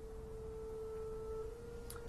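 Quiet film underscore: one soft, held note, steady and pure, with two fainter higher notes joining it for about a second in the middle.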